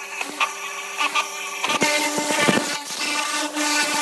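Pressure-washer jet rinsing a bare cast-iron engine block after its acid dip: a steady hiss of spray with a machine-like whir. Background music runs underneath, its chord changing about halfway through.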